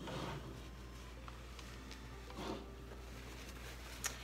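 Faint rustling of a paper towel in a rubber-gloved hand wiping the edges of a soap mold: two brief soft swishes, one at the start and one about two and a half seconds in, over a steady low hum.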